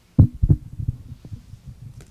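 Microphone handling noise: a handheld microphone being picked up and moved, heard as a string of dull low thumps, the loudest about a quarter to half a second in, followed by softer low bumps.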